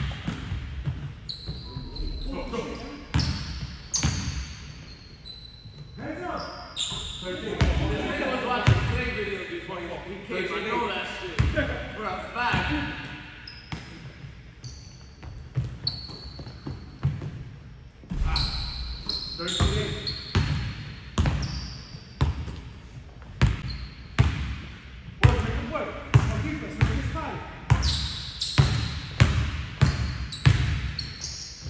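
A basketball being dribbled on a hardwood gym floor, the bounces echoing in the large hall, falling into an even beat of about one bounce a second in the second half.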